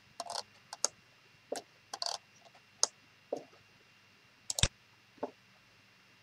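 Computer mouse clicking and its scroll wheel ticking: a dozen or so short, irregular clicks, the sharpest about four and a half seconds in.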